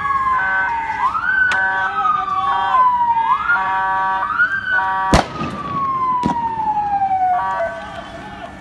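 Police vehicle siren wailing, its pitch sliding slowly down and then sweeping quickly back up, again and again, with a steady horn-like tone cutting in at times. A loud sharp gunshot about five seconds in, with fainter cracks near one and a half and six seconds.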